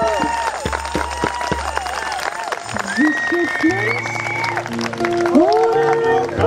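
Scattered hand clapping from a small audience, mixed with an acoustic guitar and voices.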